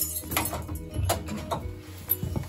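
Scattered metallic clicks and clinks from a tower clock movement being handled with its winding crank, over a steady low humming tone.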